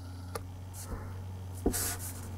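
Faint handling noise from fingers holding and turning a small plastic action figure: a couple of soft clicks and a brief rustle near the end, over a steady low hum.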